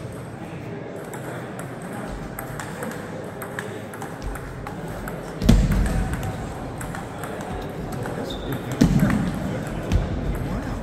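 Table tennis ball clicking off bats and the table in a rally, over a steady murmur of voices from the hall. Heavy low thumps about five and a half seconds in and again near nine seconds are the loudest sounds.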